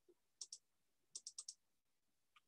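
Faint computer mouse clicks: a pair of quick clicks about half a second in, then a rapid run of four clicks, as screen sharing is started.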